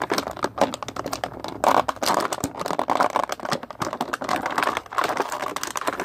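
Hard plastic being handled close to the microphone: rapid, irregular clicks and crinkling as an action figure is worked free of its plastic packaging.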